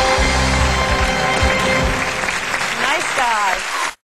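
Studio audience applauding over game-show music, with some voices, cut off abruptly just before the end.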